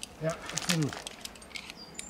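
A man says a couple of words. After that come light metallic clicks and clinks, one with a brief high ring near the end, from via ferrata carabiners knocking on the steel safety cable and chain.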